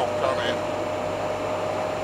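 Steady in-cab drone of a Fiat Ducato–based 1985 Hobby 600 motorhome cruising, engine and road noise with a steady whine over it, the gearbox just slipped into fifth gear without the clutch.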